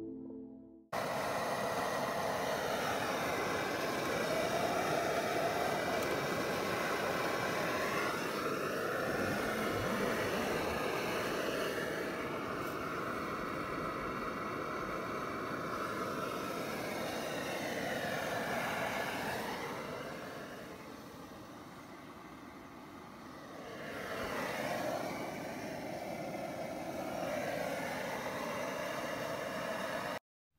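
Liquid-fuel backpacking stove burning under a pot, a steady roar that starts about a second in and drops away for a few seconds past the middle before coming back.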